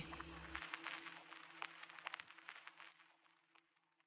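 Near silence as the song cuts off: faint scattered crackles and clicks for about three seconds over a low steady hum.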